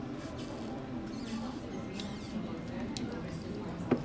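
Sipping a drink through a straw from a plastic tumbler: a few short sucking slurps, mostly in the first half. Near the end comes a single sharp knock.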